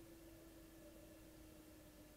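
Near silence, with a faint steady hum that sinks slightly in pitch.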